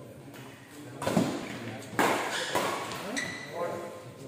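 Badminton rally echoing in a large hall: two sharp racket strikes on the shuttlecock, about one and two seconds in, followed by players' and spectators' voices.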